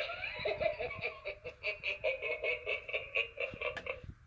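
Gemmy hanging light-up reaper head playing a recorded evil laugh through its small built-in speaker: a drawn-out voice at first, then a rapid ha-ha-ha of about six pulses a second that stops just before the end.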